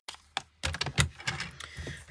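A paper trimmer being handled: a string of short plastic clicks and taps as its cutting track is moved and paper is set in place under it.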